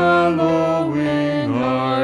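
Hymn sung by voices with organ accompaniment. The held chords step down in pitch partway through, and there is a brief break in the sound at the end before the next chord.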